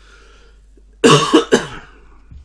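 A man coughing twice in quick succession, about a second in, loud against the quiet room.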